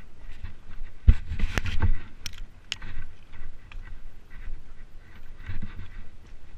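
Footsteps crunching on a trail at walking pace, about two steps a second, with a louder burst of knocks and thumps about a second in.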